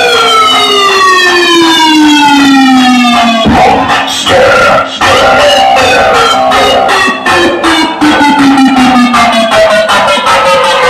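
Loud DJ music over a large outdoor sound system, in a breakdown carrying a siren-like effect: a buzzy tone slides steadily down in pitch for about three and a half seconds. A brief hit of bass follows, then from about six seconds in a second downward slide.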